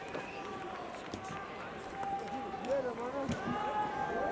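Faint, distant voices of players and spectators on an open cricket ground, scattered calls over a light steady background haze.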